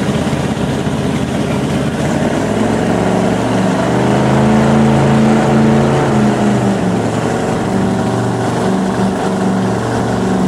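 Motorboat engine running at speed, its pitch rising and falling back about halfway through, under a steady rush of wind and water.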